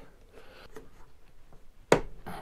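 Faint fumbling with a plastic hive latch, then one sharp click near the end as the latch snaps shut.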